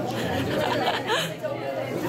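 Voices chattering and talking in a busy room.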